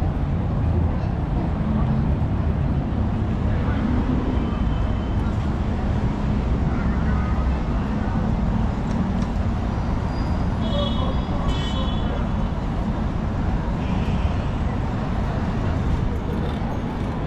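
Busy city street ambience: a steady rumble of road traffic, with passers-by talking.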